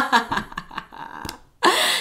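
A woman laughing in short bursts, with a louder breathy burst near the end.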